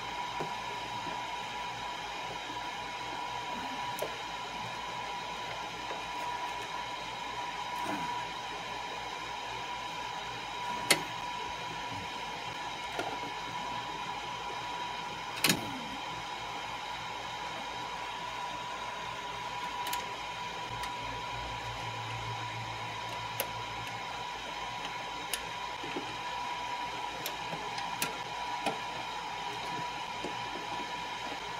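A steady whir with a constant high whine runs throughout, under scattered sharp clicks and taps as crimped wire connectors are handled and fitted onto a car amplifier's screw terminals. The two sharpest clicks come about eleven and fifteen seconds in.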